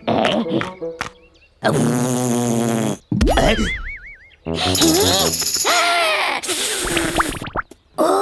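Cartoon sound effects over children's background music as a toy bubble blower is blown and fails to make bubbles. A buzzing blow comes about two seconds in, then a wobbling, warbling whistle.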